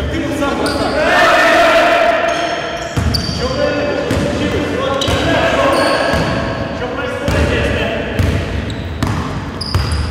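A basketball dribbled and bouncing on a gym floor during play, a thud every second or two, in a large hall, with players' voices calling out.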